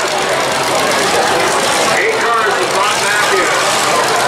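Demolition derby cars' engines running as they move into the arena, under a steady din of crowd noise and voices.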